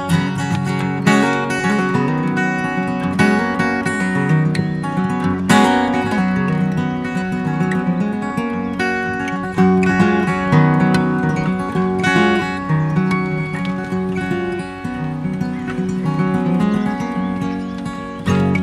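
Acoustic guitar played solo and unplugged: a continuous instrumental passage of plucked and strummed chords, with no singing.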